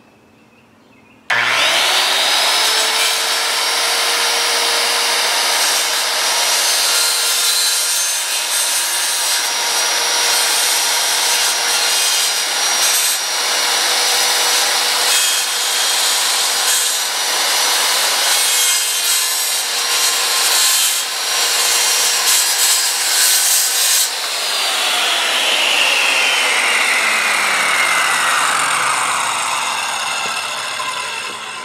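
SkilSaw SPT67FMD-22 circular saw with a Diablo polycrystalline-diamond blade starting about a second in, spinning up to a steady whine and cutting through fiber cement board. With several seconds left it is switched off, and the whine falls away as the blade spins down.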